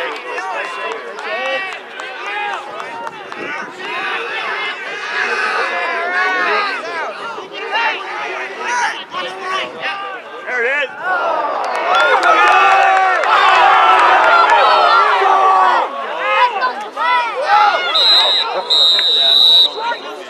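Sideline crowd at a lacrosse game: many voices shouting and calling over each other, swelling louder in the middle. Near the end a referee's whistle blows, a short blast then a longer one, stopping play for a penalty.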